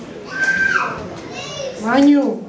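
A few short, high-pitched voice calls in a large room, sounding like a child's voice, with no clear words.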